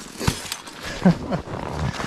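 A man's short low chuckle: a few brief falling sounds about a second in, after a sharp click near the start.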